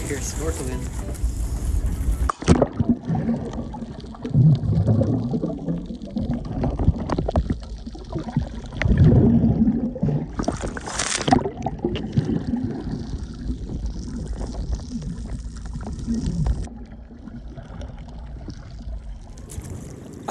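Water heard through an underwater action camera: muffled sloshing and low rumbling, with a loud rush of bubbles about eleven seconds in. It opens with about two seconds of wind and water noise above the surface, which cuts off sharply as the camera goes under.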